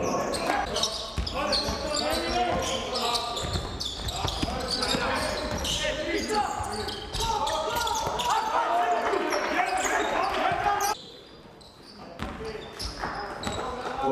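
Live basketball game sound in a near-empty hall: players and the bench shouting and calling out over a ball being dribbled and bouncing on the wooden court. About eleven seconds in the sound drops sharply to a quieter stretch for a second or so, then the voices and bouncing come back.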